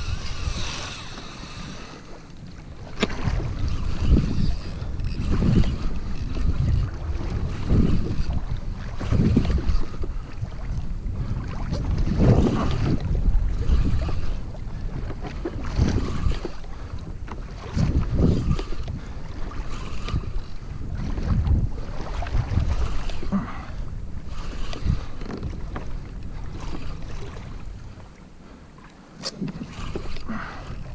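Wind buffeting the microphone and water rushing and slapping against a plastic fishing kayak's hull in irregular loud surges while a hooked fish pulls the kayak along. In the first second or two a fishing reel's drag is still screaming as line goes out, then fades.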